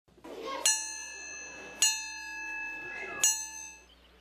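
School bell struck three times, a bit over a second apart, each stroke ringing on and fading; the bell signals lunchtime.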